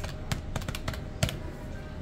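Buttons of an electronic desk calculator being pressed: a quick, irregular run of plastic key clicks.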